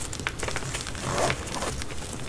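Zipper of a small fabric pouch being pulled open by hand, with faint ticks and soft rustling as the pouch is handled.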